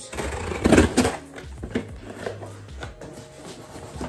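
Scissors cutting open the packing tape of a cardboard shipping box, with the cardboard scraping and crackling. The noise comes in short scrapes and clicks, loudest about a second in.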